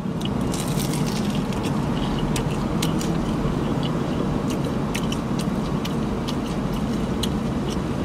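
Crispy Korean fried chicken being bitten and chewed close up, with scattered small crackling crunches, over a steady rumble in a car's cabin.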